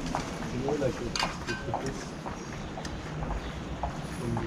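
Faint, indistinct voices over steady street background noise, with scattered light clicks and taps.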